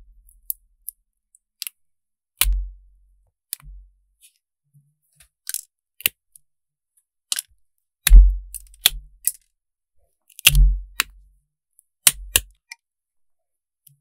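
Small nippers clicking and snapping as they pry and snip decorative parts off gel nails. It is an irregular series of sharp clicks, several with a dull knock under them, the loudest a little past halfway.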